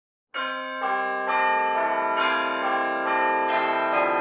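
Bells ringing in a peal, a new strike about every half second. Each tone rings on and overlaps the next. The ringing starts about a third of a second in.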